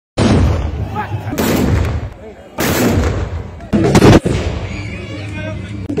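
Black-powder muskets fired in ragged volleys in a baroud. Each volley is a loud blast trailing into a rumble, and the volleys come about a second apart, the loudest about four seconds in. Men's voices are heard between the volleys and after the last one.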